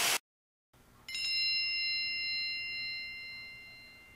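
A single bell ding, a high bright strike about a second in that rings on and slowly fades over about three seconds, used as a sound effect.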